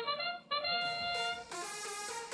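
Arena match-start sound effect: a short brass-like fanfare, a brief note followed by a longer held one, signalling the start of the autonomous period.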